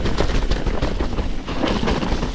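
Mountain bike descending a rough, muddy downhill trail: a steady low rumble with rapid clattering knocks and rattles as the bike bounces over the ground.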